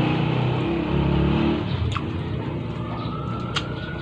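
A motor vehicle's engine running with a steady low hum that eases off after about a second and a half.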